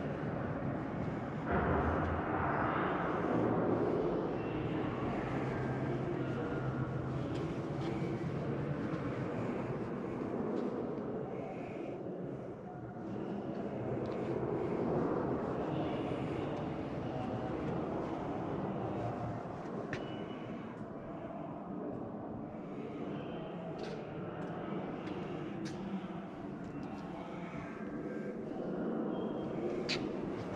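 Steady background murmur of a large exhibition hall, somewhat louder two to four seconds in, with a few faint clicks later on.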